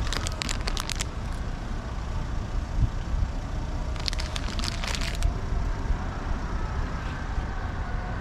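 Road traffic noise, a steady low rumble, with two short bursts of crackling clicks: one in the first second and another about four seconds in.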